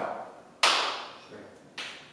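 Two sharp hand slaps, the first a little over half a second in and the louder, the second near the end, each ringing out briefly in the hall.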